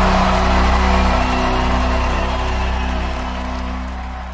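Recorded song ending on a held final chord that fades out slowly.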